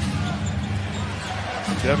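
A basketball being dribbled on a hardwood court.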